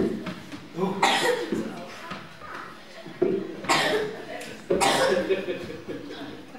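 A person coughing: a run of about five harsh coughs spread over several seconds, over a murmur of voices.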